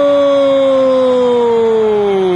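A Brazilian TV football commentator's long, drawn-out goal cry of 'Gol!', one loud held note that sags slowly in pitch toward the end.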